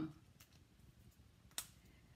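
Near silence, broken by one sharp click about one and a half seconds in: a marker being capped.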